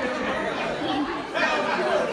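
Several adults talking over one another in a room: steady overlapping chatter with no single voice standing out.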